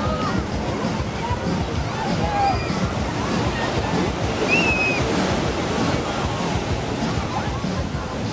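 Surf washing and breaking on a beach, a steady rushing noise, with distant voices and a few short shouts from people in the water.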